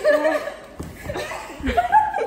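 Young people laughing and chuckling.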